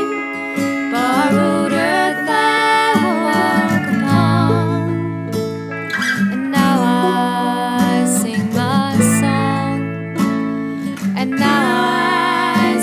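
Country-folk song: acoustic guitar and banjo accompany a woman singing long, wavering held notes.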